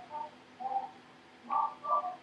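Faint, short bird calls in the background during a pause in speech: a few brief chirps spread through the pause, with one near the start, one in the middle and a pair near the end.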